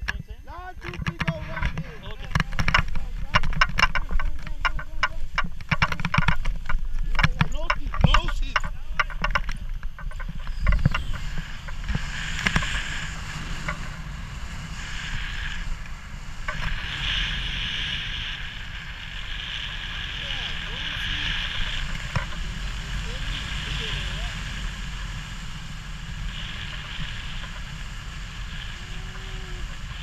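Tandem paraglider takeoff: feet running and crunching in snow, with jolts of the harness and gear, for about the first ten seconds. Then steady wind rushing over the action camera's microphone in flight, with gusts of higher hiss coming and going.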